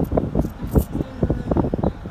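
A car's low road and engine rumble, with wind buffeting the microphone in uneven gusts.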